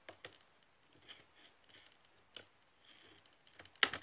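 Faint scratching and small clicks of fingers picking at tape on a cardboard toy box, with a sharper click near the end.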